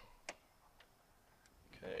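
A few small metallic clicks from needle-nose pliers working a stranded wire into a breaker panel's neutral bus bar: one sharp click shortly after the start, then two fainter ticks, over a quiet background.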